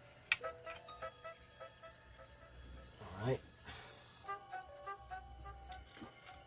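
Faint background music with held notes, with a single sharp click just after the start and one short spoken word in the middle.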